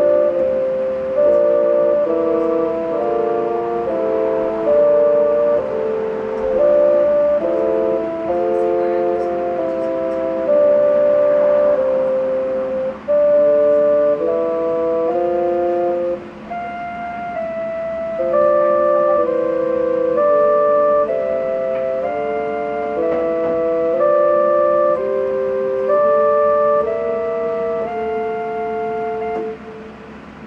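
Electronic keyboard on its bassoon voice, played by two people: a slow duet of held notes and chords in a steady rhythm, with two short pauses between phrases. The playing stops just before the end.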